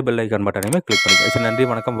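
A short click, then a bright bell-like ding about a second in that rings on for about a second: the chime sound effect of a subscribe-button animation, over a man speaking.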